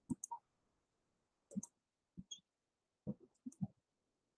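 Faint, scattered clicks and taps, short and sharp, coming in small groups with near silence between them, picked up over a video-call microphone.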